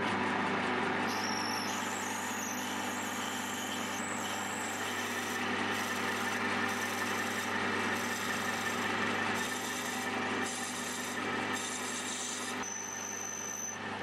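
Small metal lathe running with a twist drill boring into brass hex stock held in the spinning chuck: a steady motor hum under the hiss of the cutting, with a thin high whine. Through the second half the cutting noise rises and falls in short surges, every half second to a second.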